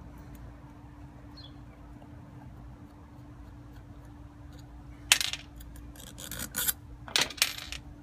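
Scraping and rubbing from a hand-held fire juggling ring and its bolt hardware being handled, in a few short, loud bursts from about five seconds in.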